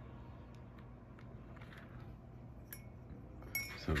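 Faint scattered light ticks over a low steady hum, then a short louder clatter of clicks near the end as the plastic watercolor paint palette is handled.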